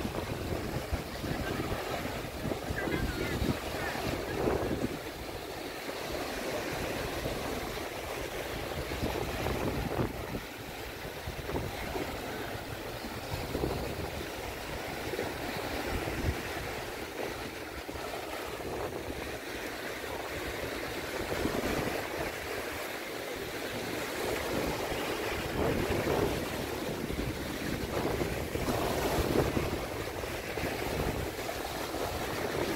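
Sea water washing and surging under wind buffeting the microphone, with a low, uneven rumble.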